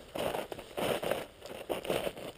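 Footsteps crunching in crusted spring snow: three steps a little under a second apart.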